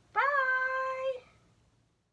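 A woman's voice calling one long, high, sing-song "bye", rising and then held for about a second.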